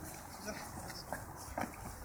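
Faint, soft footfalls of small children hopping and landing on a rubberised track, a few light thuds over quiet outdoor background.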